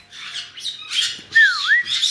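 Pet caiques squawking from their cages: harsh, high-pitched calls, with one whistled note near the middle that dips and comes back up.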